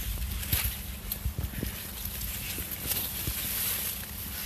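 Footsteps on field soil and corn leaves brushing against the walker and the camera while moving between rows of cornstalks: irregular soft knocks and swishes over a low rumble.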